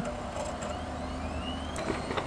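Desktop PC powering up: a steady fan hum with a faint whine rising in pitch as it spins up. The CPU cooler's fan is what is heard; the new power supply's 12 cm fan is very quiet beneath it.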